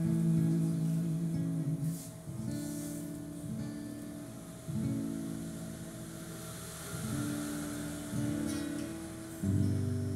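Acoustic guitar strumming a slow chord accompaniment, changing chord every second or so. A sung note is held over it for the first two seconds, and a louder chord comes in near the end.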